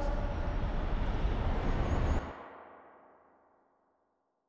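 The closing of a slowed-down, heavily reverbed pop ballad: the last sung note and chord blur into a reverb wash with deep bass, which drops off sharply about two seconds in and fades away to silence.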